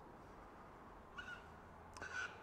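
Near silence, with two faint, short bird calls: one about a second in and another at the very end.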